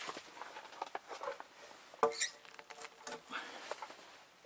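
Wooden roof poles being shifted by hand against each other and the crossbeam: scattered light knocks and scraping, with one sharper wooden knock about two seconds in followed by a brief scrape.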